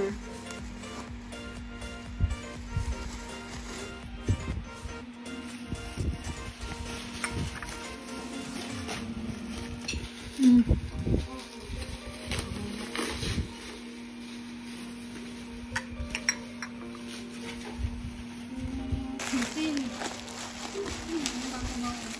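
Occasional light clinks and knocks of bone china cups and saucers being handled, over a steady low hum with faint background music and voices.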